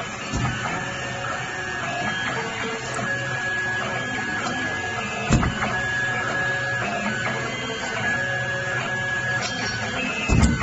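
Automatic cable stripping machine running with a steady mechanical whir, made of several held tones. There is a short thump about half a second in and another a little past five seconds.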